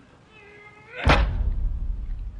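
A short pitched sound rising slightly in pitch for about half a second, cut off about a second in by a sudden loud hit followed by a deep booming bass that carries on.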